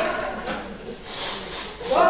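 Cloth rustling as a heavy coat is swung round and pulled on, with a couple of brief swishes in the second half.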